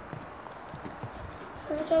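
Faint, irregular low knocks and taps over room noise, then a boy's voice starts reading aloud near the end.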